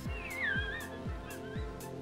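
A sleeping dog whimpering as it dreams: a thin, high, wavering whine in the first second, then a fainter one about halfway through. It sits over background music with a steady beat.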